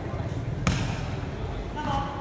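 A single sharp thud of the volleyball being hit, about two-thirds of a second in, over people's voices.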